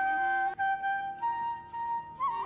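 Carnatic bamboo flute playing raga Mohanam: one long held note, then a step up to a higher held note just over a second in.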